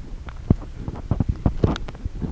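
Irregular soft knocks and rustles of footsteps on a dirt path and of the camera being handled, with some wind on the microphone.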